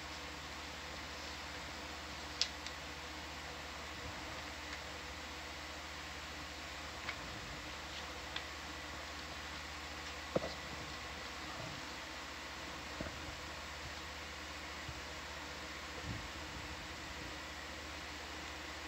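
Steady low hiss and electrical hum of the control-room audio line, with a few faint, brief clicks.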